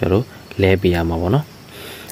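A man speaking in short phrases, with a pause near the end.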